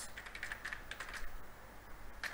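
Keystrokes on a computer keyboard: a quick run of key presses for about the first second, then a pause.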